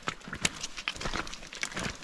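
Footsteps crunching and scuffing on a wet, stony trail, an irregular run of sharp steps on loose stones and clay.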